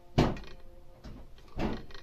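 Two knocks from a manual hydraulic crimping tool as it is handled at the end of a lug crimp: a sharp one just after the start and a softer one near the end.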